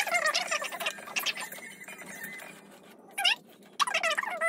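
A high-pitched voice in short, pitched phrases, with a lull in the middle.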